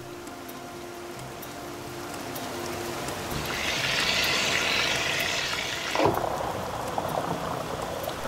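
Water swirling and rushing down through a hyperbolic Schauberger funnel as a steady rushing noise that slowly grows louder. A brighter hiss joins it about three and a half seconds in and cuts off suddenly about two and a half seconds later.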